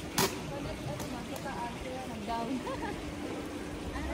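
Outdoor street ambience: faint voices of passers-by over a steady background hiss, with one sharp knock about a quarter-second in.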